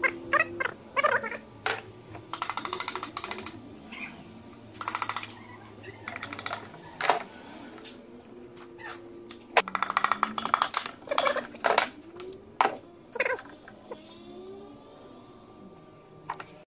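Metal clicks, knocks and short fast rattling bursts from hand tools and parts on a bare engine block as a connecting-rod cap and piston are taken out of the seized engine.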